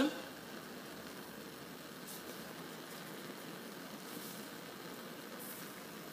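Bunsen burner on a roaring blue flame giving a faint steady rush of noise, heating a basin of salt water that is beginning to boil. A few brief faint scratches of pencil on paper, about two, four and five and a half seconds in.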